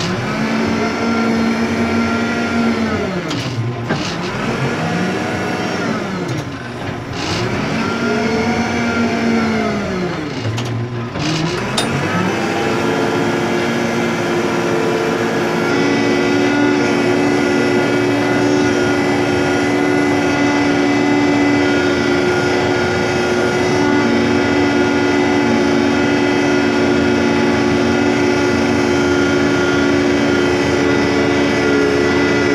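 Randon RD 406 backhoe loader's diesel engine heard from inside the cab, revving up and dropping back three times over the first ten seconds or so. It then climbs and holds at steady high revs as the machine works the ground with its front bucket lowered.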